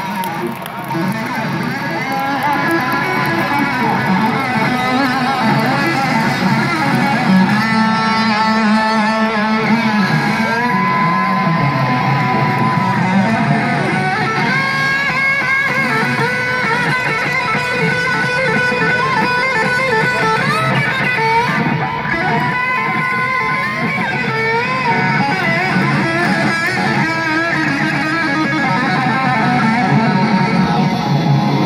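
Amplified electric guitar solo on a Les Paul, played live and recorded from the audience: long sustained notes with bends and slides, and runs of faster notes.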